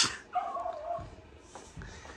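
A small dog whining briefly: one short, wavering, high-pitched whine lasting under a second, followed by a couple of faint knocks.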